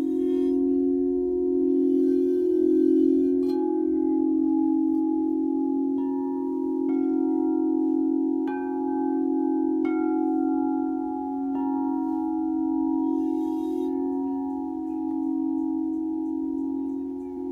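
Alchemy crystal singing bowls ringing. A deep, steady hum with a slow pulse sustains throughout, while about six light mallet strikes between roughly 3 and 12 seconds in add higher ringing tones on top.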